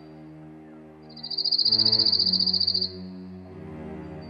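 A high, rapidly pulsed insect trill like a cricket's starts about a second in and stops abruptly about two seconds later, over background music of sustained low notes.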